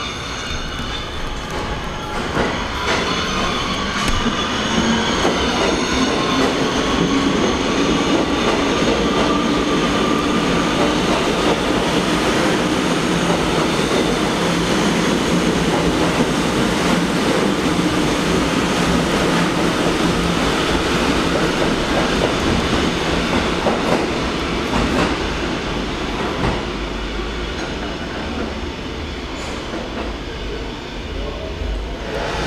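A Kawasaki R211T subway train running through the station: steady wheel-on-rail noise with clickety-clack from the track, carrying high whining tones from the wheels and drive. The sound swells a couple of seconds in, holds as the cars go by, and fades near the end.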